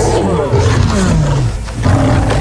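A lion growling and roaring on a film soundtrack, its pitch sliding downward through the middle.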